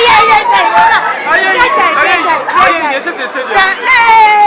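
Loud, excited shouting by several men, their high-pitched voices overlapping in quick bursts.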